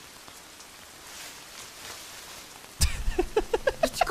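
Steady rain from an anime soundtrack, an even hiss. About three seconds in, a sudden low thump, then a girl's voice starts speaking.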